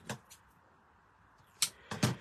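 Quiet handling of card and a roll of foam tape on a cutting mat, with one short crisp click about a second and a half in.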